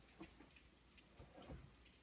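Near silence: room tone with a few faint, irregular clicks.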